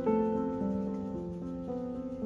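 Gentle instrumental background music, slow sustained notes changing about every half second.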